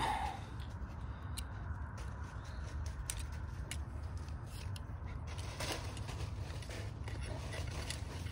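Faint scattered clicks and small metal sliding sounds from handling a knife and steel digital calipers while lining the calipers up on the blade, over a steady low rumble.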